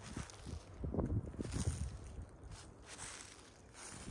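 Outdoor wind rumbling on the microphone, with irregular light rustling.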